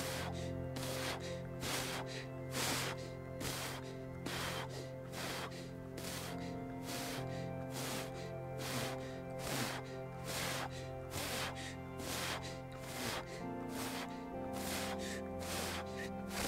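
Background music of sustained chords with a regular beat, over a man's deep, rhythmic breaths in and out through the mouth: Wim Hof power breathing.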